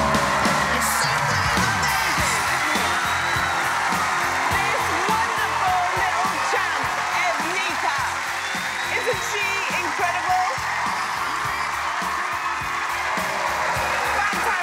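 Upbeat show music playing over a studio audience cheering and whooping, steady throughout.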